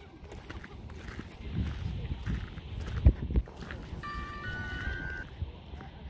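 Low rumbling noise of wind on the microphone, with two heavy thumps about three seconds in. About four seconds in comes a brief run of steady high-pitched tones at a few different pitches.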